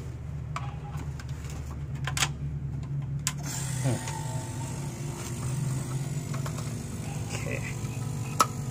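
Refrigeration vacuum pump motor running with a steady low hum while the air-conditioner system is being evacuated, with a few sharp clicks from handling the hoses and gauges in the first half.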